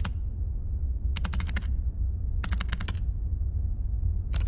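Computer keyboard keys clicking in two quick runs of about six keystrokes each, one a little past a second in and one about two and a half seconds in, typing a password. A steady low hum runs underneath.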